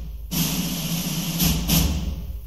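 A loud hissing rush with a low rumble underneath. It starts about a third of a second in and dips briefly past the middle.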